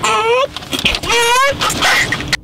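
A young boy's voice making repeated long, high-pitched, wavering cries, each rising in pitch.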